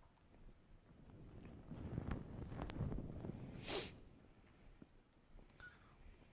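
Faint low rumble with a single short, sharp breath noise close to the microphone, like a sniff or exhale, about three and a half seconds in, and one faint click a little before it.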